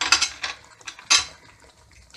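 A metal spoon clinking against a cooking pan: a few quick clinks at the start and one sharp clink about a second in.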